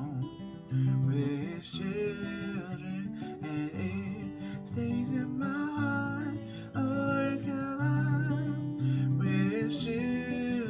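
Acoustic guitar strummed while a man sings over it, holding long, wavering notes without clear words.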